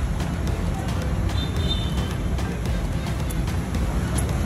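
Background music over a steady low rumble of street traffic, with faint ticks and clinks throughout.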